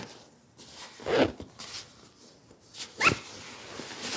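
Two short mews from a kitten, about a second in and near three seconds, with faint rustling of a jacket being handled.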